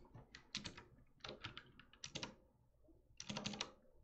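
Computer keyboard keys clicking in four short flurries of typing, faint.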